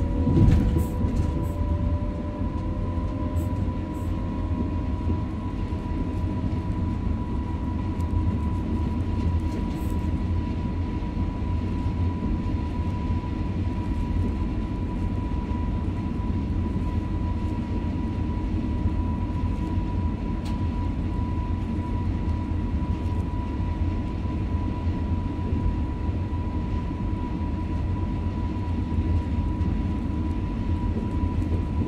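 Passenger train running along the track, heard from the front cab: a steady low rumble of wheels on rail with a constant high whine. In the first second a few sharp clicks and one louder knock as the wheels pass over a set of points.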